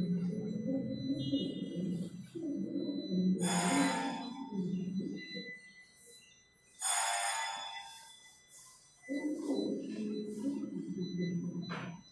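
Muffled, indistinct voices talking in a room, broken twice by a brief hissing noise, once about three and a half seconds in and again about seven seconds in.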